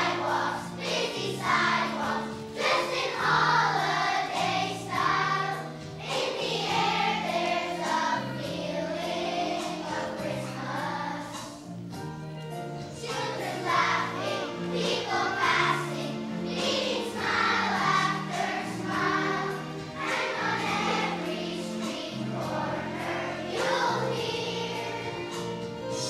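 Children's choir of primary-school pupils singing a song together over an instrumental accompaniment whose low notes are held and change in steps.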